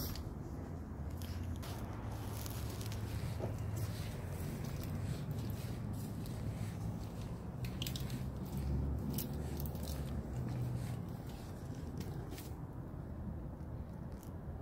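Handling noise and footsteps on a steel fire escape: a steady low rumble with scattered light clicks and knocks, irregularly spaced.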